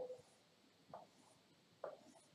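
Faint stylus strokes on a writing tablet as straight lines are drawn: about three short scratches, roughly one a second, with a brief low tone right at the start.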